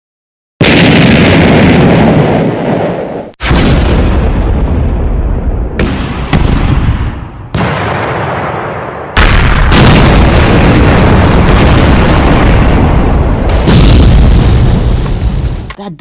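Dynamite explosion sound effect: a string of loud blasts, each starting suddenly and rolling on into a deep rumble, with fresh blasts every few seconds and the noise dying away near the end.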